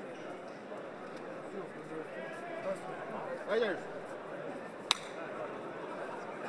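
Murmur of many voices from a seated audience in a large hall, with one louder voice about halfway through and a single sharp click near the end.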